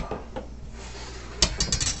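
Kitchen handling noise: a chef's knife picked up off a wooden cutting board and a plate brought in, with a quick run of clicks and knocks about a second and a half in.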